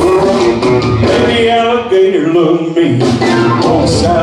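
Live band playing a rock-and-roll number on electric guitars and drums, with a male singer's voice over it.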